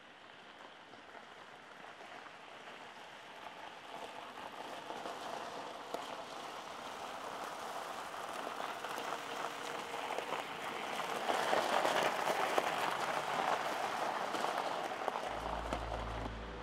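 A car approaching slowly, its tyres crackling over a wet, gritty lane, growing steadily louder as it draws near and loudest about two-thirds of the way through. Low music notes come in near the end.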